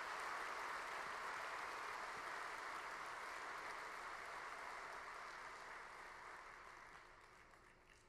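A large audience applauding, the clapping slowly dying away over the several seconds until it has almost stopped by the end.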